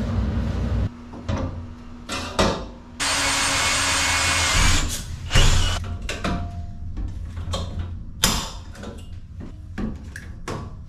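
Power-tool and hand-tool work on metal panels: a power tool runs loudly for about the first second and again for nearly two seconds near the middle, and between and after these come scattered clicks, taps and knocks of hand work.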